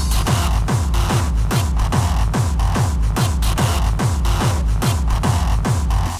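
Hardstyle music: a heavy kick drum on every beat, about two and a half hits a second, each hit falling in pitch, under a continuous synth layer. The kick pattern starts right at the opening after a short break.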